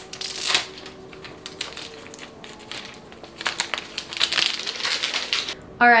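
Thin plastic wrapping being torn and peeled off a phone box by hand, crinkling and crackling, heaviest at the start and again from about three and a half seconds in.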